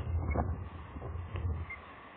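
Short, sharp calls from juvenile ospreys at the nest: two close together near the start and a fainter one past the middle. A low rumble of wind on the microphone lies under them.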